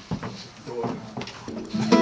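Low studio sounds with a few light knocks and some indistinct talk, then a sustained musical note sets in near the end as the band starts to play.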